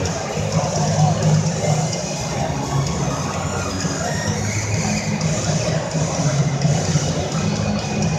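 Music with a steady bass line playing over an arena's public-address system, with a crowd's chatter underneath.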